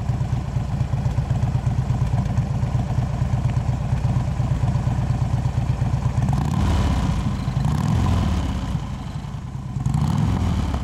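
Harley-Davidson Switchback's Twin Cam 103 V-twin engine idling with a steady low beat. About six and a half seconds in it grows louder for a couple of seconds, then settles back.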